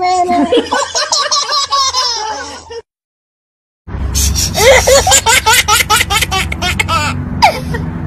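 A baby laughing in a quick, even run of short bursts through the second half. Before that there is high-pitched baby vocalizing, then about a second of dead silence roughly three seconds in.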